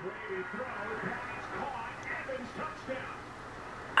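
A televised NFL football game playing in the room: a commentator's voice, faint, over a steady background din.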